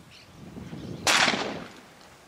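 A single shotgun shot at flying doves about a second in, sharp and loud, with a short echoing tail.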